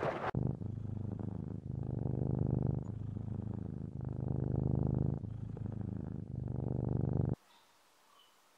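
Domestic cat purring: a steady low rumble that swells and dips with each breath, about once a second. It cuts off abruptly near the end.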